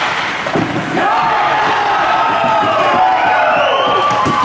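Several voices shouting and cheering in an ice rink, long drawn-out calls that slide down in pitch, starting about a second in. A few short knocks come just before.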